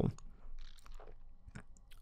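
A quiet pause with a few faint, soft clicks scattered through it.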